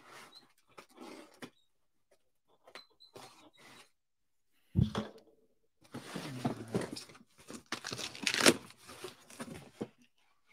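Cardboard shipping box being handled and opened: scattered light scrapes, a single thump about five seconds in, then a few seconds of tearing and rustling of cardboard and packing, loudest near the end.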